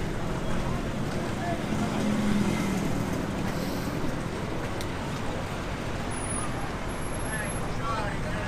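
Street traffic noise with a motor vehicle's engine running close by, a steady low hum that is strongest in the first few seconds, and people's voices in the background.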